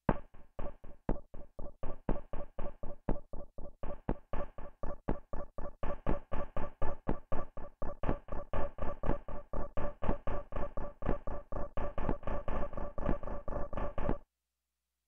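Synthesizer rhythm from Fluffy Audio AURORROR's "Chiptune MW" rhythm patch in Kontakt: a steady sequence of short, evenly spaced chiptune-style notes, about four a second. A higher glitchy layer joins about four seconds in.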